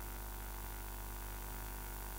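Steady low electrical mains hum with a faint hiss above it, unchanging throughout.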